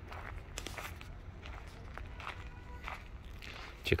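Footsteps of a person walking on a dirt path, a step every second or less, over a low steady rumble.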